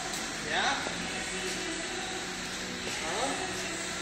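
Steady background hum of a large garage, with a few faint fixed tones in it, under two short spoken words and a child's brief voice.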